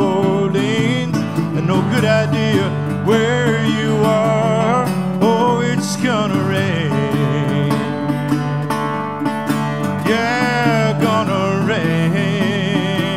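Solo instrumental break on a metal-bodied resonator guitar, plucked notes ringing with a steady bass underneath and melody notes that waver and glide in pitch.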